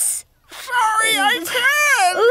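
A cartoon character's high-pitched, wordless whimpering voice, wavering up and down in pitch, starting about half a second in after a brief sound and a short pause.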